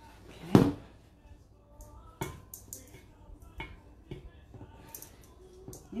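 Scattered light clicks and knocks from a stainless steel mixing bowl as bread dough is scraped out of it by hand, with one sharp, louder knock about half a second in.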